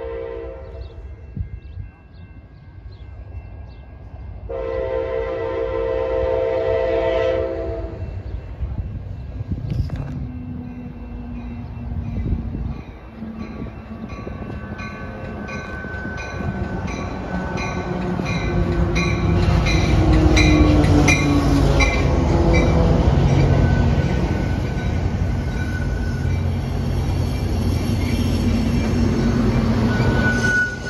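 Amtrak passenger train arriving at a station: a short horn note at the start and a long horn blast about four to eight seconds in. The train's rumble then builds steadily, and for the last ten seconds or so the cars roll past close by with wheel clatter.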